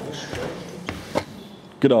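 Two short, sharp clicks about a third of a second apart in a quiet room, followed by a man starting to speak near the end.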